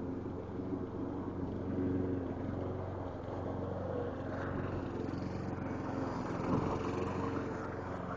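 A motor or engine running steadily with a constant low hum.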